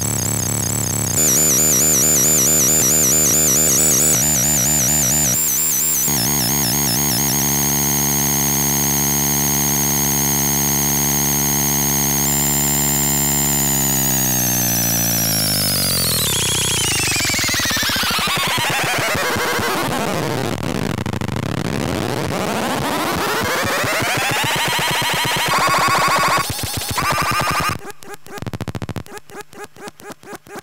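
Circuit-bent VTech Little Smart Tiny Touch Phone toy making a harsh, buzzy electronic drone with a warbling high whistle over it. As the large dial is turned, the pitch sweeps slowly down over several seconds and climbs back up, and near the end the sound breaks into rapid pulses.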